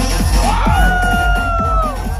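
Electronic dance music from a DJ set, played loud: a steady kick-drum beat under a synth lead that glides up about half a second in, holds and drops away near the end, with a crowd cheering.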